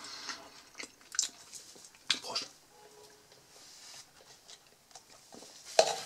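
A person drinking ayran, a yogurt drink, from a plastic cup, with scattered small gulps and mouth sounds. About six seconds in, the cup is set down on a wooden table with one sharp knock.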